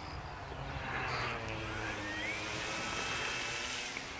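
Radio-controlled model Beaver plane's motor and propeller spinning up: a whine that rises in pitch about a second and a half in, then holds steady.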